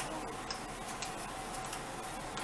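Faint light clicks and taps, roughly two a second, over a steady room hiss, from a small cardboard box being handled and opened.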